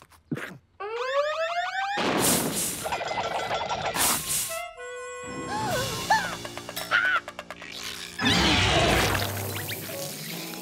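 Cartoon sound effects over music: a rising whistle-like glide, then a string of loud, noisy rushes mixed with short tones and chirps, with another noisy rush near the end, accompanying a cat's reaction to a mouthful of hot sauce.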